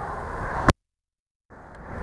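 Low steady background noise that stops on a sharp click, then dead digital silence for under a second before the background noise fades back in: an edit splice between two recorded clips.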